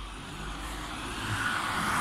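A passing vehicle: a steady rushing noise that grows louder toward the end.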